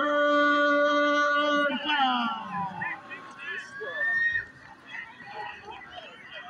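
A long shout held on one pitch for nearly two seconds, sliding down at the end, followed by quieter voices calling from the sidelines.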